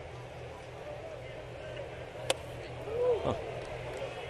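A 97 mph four-seam fastball smacking once into the catcher's mitt, a single sharp pop a bit over two seconds in, over a steady ballpark crowd hum.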